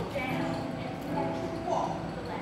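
Indistinct voices of actors on stage, with brief knocks or clops; no words can be made out.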